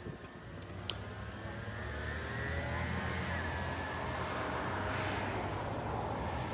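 A passing motor vehicle's low engine rumble, growing louder over the first few seconds and then holding steady, with a faint rising whine above it.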